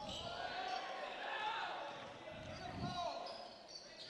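A basketball being dribbled on a hardwood gym floor, a few bounces heard under faint, distant shouting in the hall.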